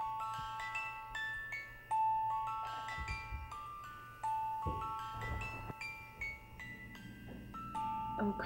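A slow, tinkling music-box melody of ringing bell-like notes. A stronger held note opens each phrase about every two seconds.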